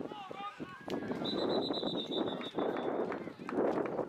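A referee's pea whistle blown once, a trilling high tone starting about a second in and lasting nearly two seconds, blowing the play dead as the ball carrier is brought down in a pile-up. Spectators talk and call out around it.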